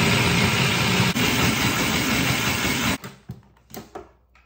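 Food processor motor running at a steady pitch as its blade chops cooked cauliflower into cauliflower rice, cutting off about three seconds in. A few light plastic clicks follow as the lid is taken off the bowl.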